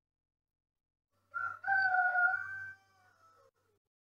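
A rooster crowing once, about a second in: a short first note, then a long held note that falls away at the end.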